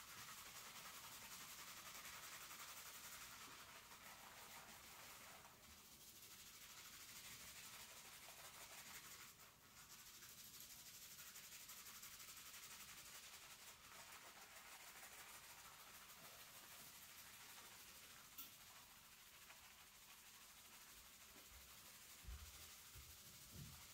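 Fingertips scrubbing a shampoo-lathered scalp: a faint, steady wet rubbing and squishing of foam through short hair. It breaks off briefly twice, and there is a single light click late on.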